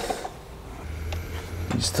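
A quiet stretch: a steady low hum with a few faint ticks about a second in, and a short spoken word near the end.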